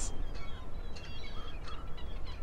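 Birds calling faintly, a few short scattered chirps, over a steady low rumble.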